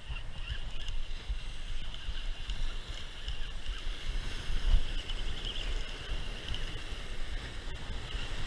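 Wind buffeting the microphone over the steady wash of surf breaking on rocks, with uneven low gusts throughout.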